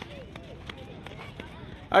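Low outdoor background of faint distant voices and a few scattered small clicks, with no nearby sound standing out. Near the end, a man's loud shouted count begins.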